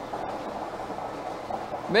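A steady, even background noise without words, running on under the caller's pauses.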